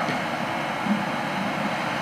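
Steady hiss of room noise, like ventilation, picked up by an open microphone.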